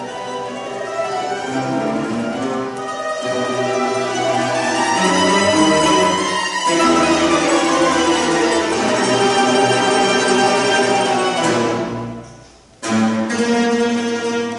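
Mandolin orchestra of mandolins, mandolas, guitars and double bass playing, growing louder over the first few seconds and holding at full strength. About twelve seconds in the music falls away into a brief pause, then the whole ensemble comes back in suddenly and loudly.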